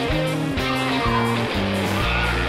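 Background music: a steady run of short stepped notes over a low bass line, with guitar.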